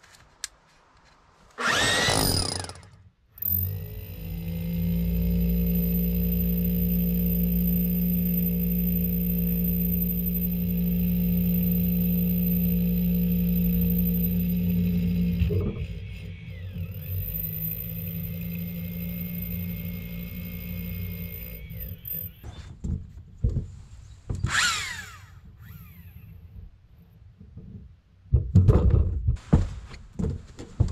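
Red rotary hammer with a long masonry bit boring a hole through an old stone foundation wall for a hose bibb pipe. After a short trigger pull it runs steadily with a high whine for about twelve seconds, carries on more quietly for several more seconds and stops, followed by a few short noises near the end.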